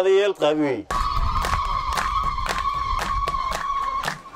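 A man's voice for about a second, then a single steady high tone held for about three seconds over clicks and a low rumble. The tone drops away at a cut.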